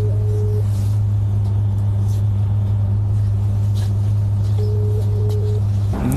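A loud, steady low-pitched hum with no change in pitch or level, the kind a running generator or electrical equipment makes, with a faint higher tone flickering briefly at the start and again near the end.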